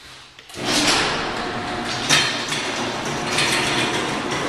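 Sectional garage door being raised by its electric opener: a brief hum, then from about half a second in a loud, steady mechanical rattle as the door runs up its tracks.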